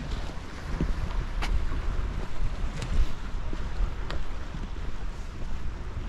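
Strong wind buffeting the microphone in gusts, a rumbling roar, with a faint wash of the sea behind it and a few light clicks.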